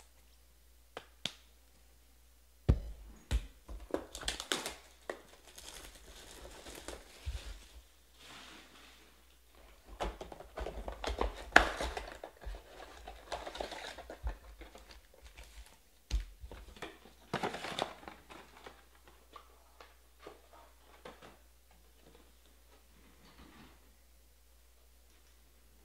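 A cardboard trading-card hobby box being opened by hand and its foil-wrapped packs pulled out: cardboard flaps rubbing and tearing, and wrappers crinkling in stretches. Sharp knocks come about three seconds in, around eleven seconds in and about sixteen seconds in, as the box and packs are handled against the table.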